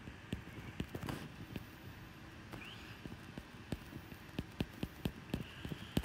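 A stylus tapping and dragging on a tablet screen during handwriting: a string of light, irregular clicks over a faint steady hiss.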